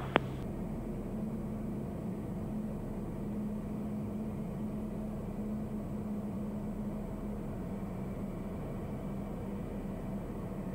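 Steady cabin drone of a Piper Meridian's turboprop engine and propeller, with a low steady hum under the noise and a single click at the very start.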